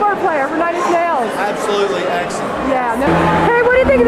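Mostly talking: a voice speaking over room noise. About three seconds in, after a cut, steady low held tones come in under the talk.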